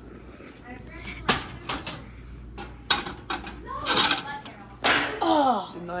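A handful of sharp knocks and clanks as a frying pan is handled at the stove, followed by short vocal sounds, one falling in pitch near the end.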